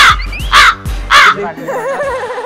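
Comedy sound effect of a crow cawing three times in quick succession, harsh and loud, with background music under it.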